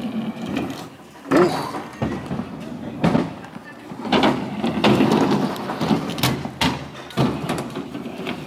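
Kick scooters rolling on skatepark ramps, with several sharp clattering knocks as wheels and decks land and strike the ramp surfaces. Voices can be heard in the background.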